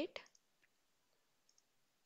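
A few faint computer mouse clicks in near silence, one about half a second in and a couple more about a second and a half in.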